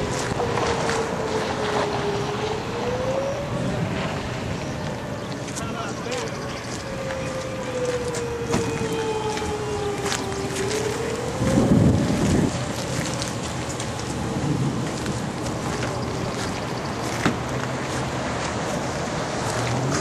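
Outdoor tornado warning siren wailing, its pitch slowly rising and falling over several seconds, sounding an alert for the nearby tornado. Wind buffets the microphone throughout, with a louder gust about twelve seconds in.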